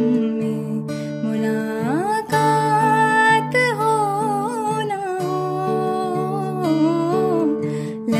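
A woman singing a slow melody to her own acoustic guitar accompaniment; about two seconds in her voice slides up to a held high note, then comes down in small ornamented turns over the steady guitar chords.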